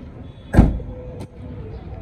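A hatchback's tailgate slammed shut: one heavy thud about half a second in, then a short sharp click a little later.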